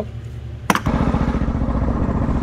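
A sharp click, then, just under a second in, a go-kart's Coleman KT196 single-cylinder engine running with a fast, even firing beat.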